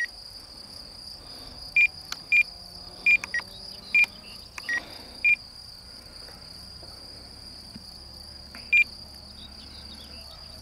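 Short high beeps from an RC transmitter as its trim buttons are pressed, about seven of them at uneven spacing, the last near the end. Crickets chirr steadily throughout.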